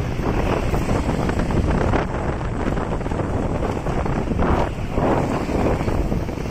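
Wind buffeting the microphone of a handheld camera carried along a street: a continuous, uneven low rumble that surges and falls.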